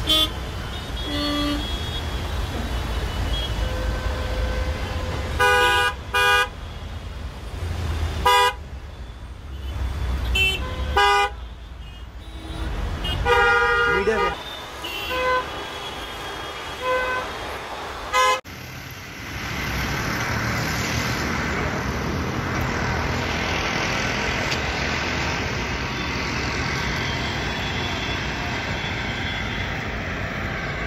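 Car horns honking again and again in short blasts in a stalled jam of cars, over the low rumble of idling engines. About eighteen seconds in, the sound cuts to a steady, even traffic noise.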